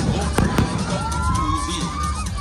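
Aerial fireworks shells exploding: three sharp bangs within the first second, heard over background music.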